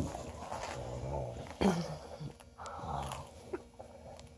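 Dogs play-wrestling, growling low twice, about half a second in and again near three seconds, with a short sharp sound between the growls.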